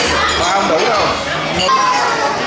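Overlapping conversation in a busy restaurant dining room, with a ringing clink of tableware a little past the middle.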